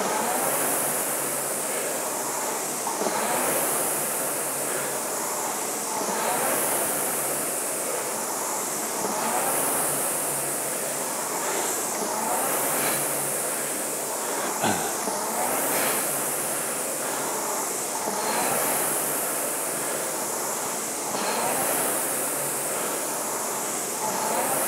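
Concept2 indoor rower's air-resistance flywheel fan whooshing with each drive and spinning down in between, surging about every three seconds at a steady 20 strokes per minute.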